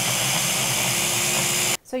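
Electric mini food chopper running steadily, its motor top held down, pureeing chipotle peppers in adobo sauce with garlic and lime juice. The motor cuts off abruptly near the end.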